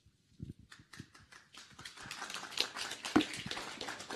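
Audience applause: a few scattered claps at first, building to steady clapping from about a second and a half in.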